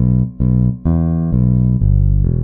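Bass guitar playing a bass line: short, detached repeated B notes in a swung triplet rhythm, then from about a second in a descending line of held notes, E then B then G.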